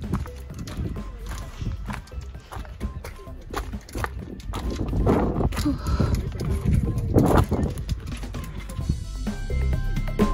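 Footsteps crunching on a loose gravel trail in an uneven walking rhythm. Music comes in about nine seconds in.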